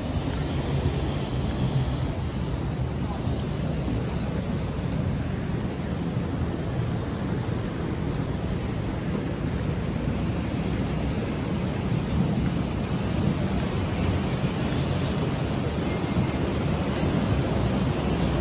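Steady rushing of fast-flowing river water, an even noise that is strongest low down.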